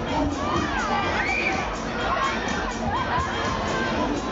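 Riders on a Mondial Shake R4 funfair thrill ride screaming and shouting as the gondolas spin, several rising-and-falling cries over a steady fairground din.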